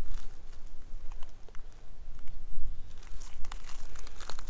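Wind buffeting the microphone: an uneven low rumble, with faint scattered clicks and crackles.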